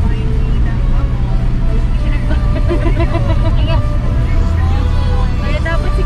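Steady low rumble of a car driving slowly, heard from inside the cabin, with voices over it.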